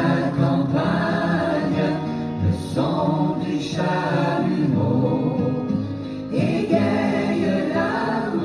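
Background music: a choir singing with long held notes.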